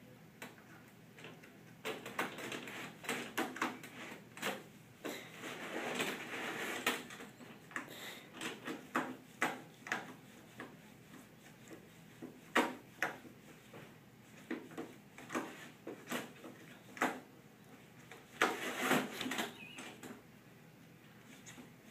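A cat pawing and pushing at the closed wire-grille door of a plastic pet carrier, trying to get it open. The door rattles in irregular spells of sharp clicks and clatter, with short quiet gaps between.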